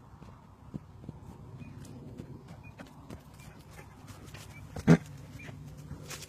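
Horses close to the microphone: scattered soft knocks and ticks over a low steady rumble, with one short loud snort about five seconds in.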